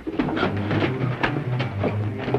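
A heavy crate being shoved along: a rapid, uneven run of scrapes and knocks over a low steady hum.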